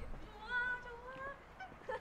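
A woman's voice, two drawn-out, high-pitched exclamations, the first about half a second in and a shorter rising one just after a second, with a brief bit of chatter near the end.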